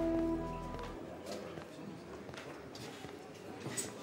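Soft background score with long held notes that ends about a second in. After it comes low room ambience with a few faint clicks.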